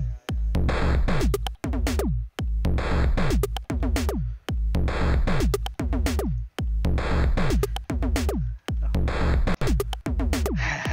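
Teenage Engineering Pocket Operator synths playing a looping chiptune pattern: drum-machine beats under synth tones that fall in pitch, the phrase repeating about every two seconds.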